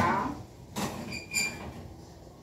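Stainless steel pots and lids being handled on a stovetop: a knock at the start, a short scrape, then two brief metallic clinks that ring, a little over a second in.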